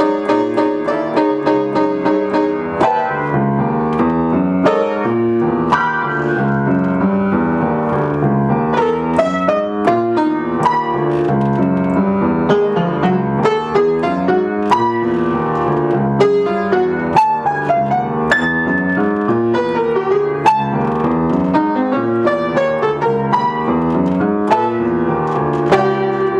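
Solo acoustic piano playing jazz: a continuous, busy stream of notes in the right hand over a moving bass line in the left.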